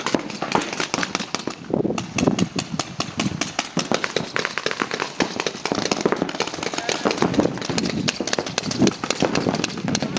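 Paintball markers firing rapidly, a steady stream of sharp pops, many shots a second, with voices mixed in.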